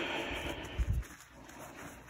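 A microfiber towel rubbing over a pool ball by hand: a rustle lasting about a second, with a low thump near its end.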